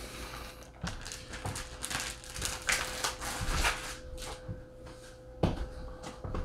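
Thin plastic fish-shipping bag crinkling and rustling as it is handled, in irregular bouts, with a sharp knock near the end.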